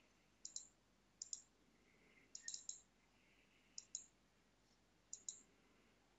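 Computer mouse button clicking five times, each a quick pair of sharp clicks (press and release), about one to one and a half seconds apart, over quiet room tone.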